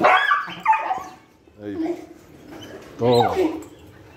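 Fila Brasileiro dogs in a brief scuffle, barking and yelping, as the big male corrects the young female. There is a loud outburst at the start and another about three seconds in.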